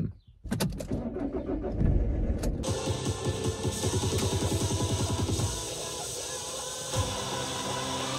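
A van's engine being started: the starter cranks, the engine catches and runs with a rapid even pulsing, then settles to a steadier idle about five and a half seconds in. Music comes in over it about two and a half seconds in.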